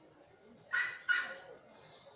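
Two short, high-pitched dog yips in quick succession, a little under a second in, against otherwise quiet room tone.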